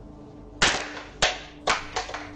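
A series of four sharp knocks or bangs in under two seconds, unevenly spaced, each dying away briefly, over a steady faint hum.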